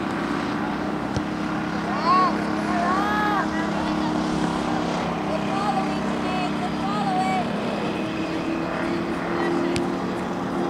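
Shouted calls from players and spectators at a youth soccer match, loudest about two seconds in and again later, over a steady low hum.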